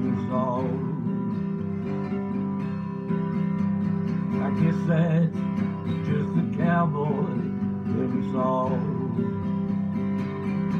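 Epiphone acoustic guitar strummed steadily in a country-song rhythm, playing the song's instrumental ending.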